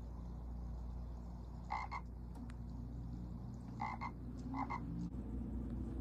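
Frog croaking three times during a quiet stretch of a cartoon soundtrack, each croak a short two-part call, heard through a television's speaker over a steady low hum.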